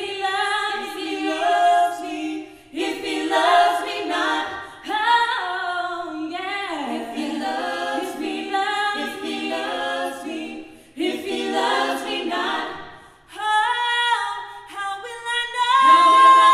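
Small vocal group singing a cappella in harmony, with the voices moving in phrases broken by short pauses.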